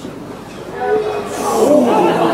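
Players and spectators shouting during a goalmouth scramble. The voices rise and grow louder from about a second in.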